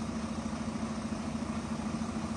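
Steady low engine hum with a fast, even flutter.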